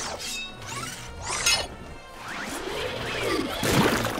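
Cartoon sound effects over background music. A mechanical claw on an extending robot arm makes several quick rising whooshes. Then a longer swelling effect builds to the loudest burst near the end, as a tar-covered figure is pulled up out of sticky tar.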